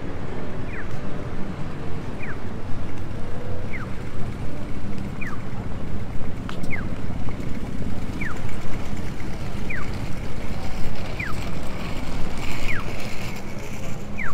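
Japanese audible pedestrian-crossing signal chirping: a short falling electronic chirp repeats evenly about every one and a half seconds, nine times, telling pedestrians that the walk light is on. Steady low street and traffic rumble lies beneath.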